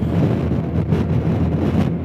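Wind rushing over the microphone of a 2019 Honda Gold Wing Tour at highway speed, with a steady low drone of engine and road noise beneath it.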